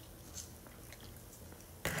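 Pause in a man's voice-over: low steady hiss, then one short breath-like noise near the end.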